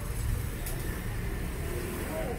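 Low, steady rumble of road traffic from the street outside, with a single short click about two-thirds of a second in.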